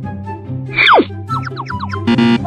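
Cartoon-style sound effects over light background music: a loud whistle-like glide falling steeply in pitch a little under a second in, then a quick run of short falling chirps.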